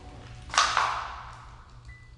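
A single sudden hit about half a second in, with a ringing tail that fades over about a second.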